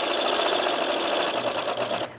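Two small DC motors whirring steadily as they turn the model's bevel gear and drive rod.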